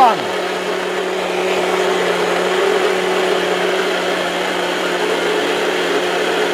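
Electric mixer grinder (Maharaja) running steadily, its motor giving an even hum of constant pitch while the jar grinds a wet mixture into a smooth paste.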